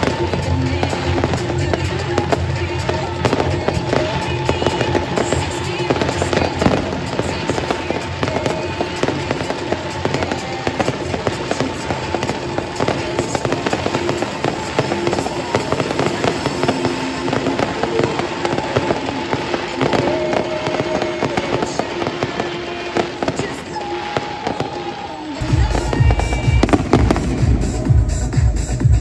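Fireworks display going off: a run of bangs and pops from aerial shells and comets over music played along with the show. Near the end the sound grows louder and a deep low rumble comes in.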